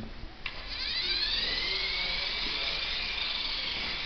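Hobby robot car's servo drive motors whining as it drives, a high whine that settles to a steady pitch after a click about half a second in.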